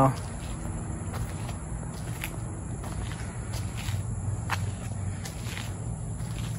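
Footsteps on a paved driveway, scattered soft scuffs, over a steady low hum.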